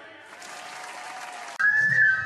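Applause, a steady even clatter that stays fairly soft. About a second and a half in, loud dance music cuts in over it, opening on a held high melody note.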